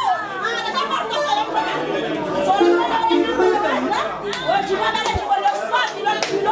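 Several voices talking over one another, with live band music continuing underneath.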